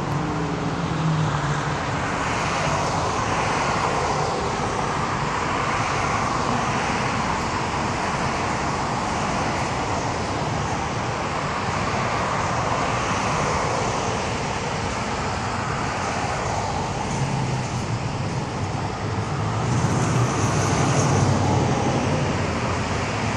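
Road traffic: cars passing one after another on a multi-lane road, tyre and engine noise swelling and fading as each goes by. A louder, lower engine note builds near the end.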